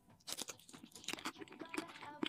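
Close-miked ASMR mouth sounds of someone crunching and chewing pieces of a dark hard-candy lollipop: a quiet, irregular run of small crackling crunches and clicks.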